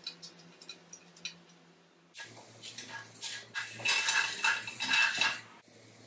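Steel parts of a homemade hole saw guide clinking and rattling as they are handled, a few light clicks at first, then a run of louder, ringing metal clinks in the second half that stops suddenly.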